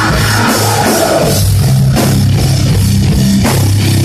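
Live heavy metal band playing loud, with distorted electric guitars, bass and a full drum kit, recorded on a phone from the audience so the sound is loud and distorted.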